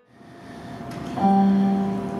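Yamaha CF II concert grand piano being played: a low chord struck about a second in and left ringing. A hiss builds up underneath before it.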